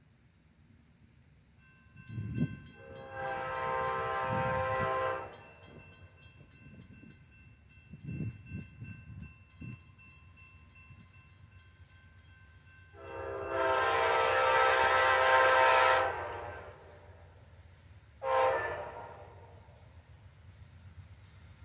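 Amtrak locomotive air horn sounding a chord from an approaching train: a long blast a few seconds in, a second long blast about ten seconds later, then a short blast near the end. This is the long-long-short of a grade-crossing warning. A few brief low thumps come in between.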